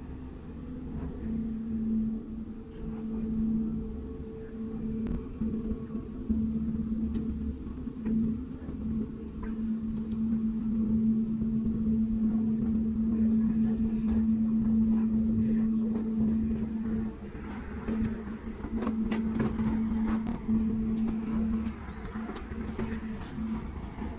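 Steady low drone of the thousand-foot laker Mesabi Miner's diesel engines as the ship runs through the ice, over a deep rumble.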